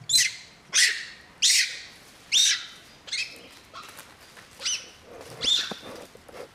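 Macaque screeching: about eight loud, high-pitched screeches, each sliding down in pitch, roughly one every 0.7 s; the first four are the loudest and the later ones weaker.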